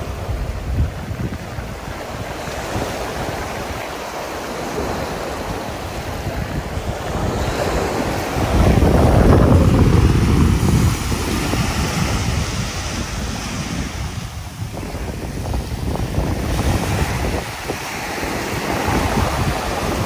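Gentle ocean surf washing onto a sandy beach, with wind rumbling on the microphone; the noise swells louder from about eight to eleven seconds in.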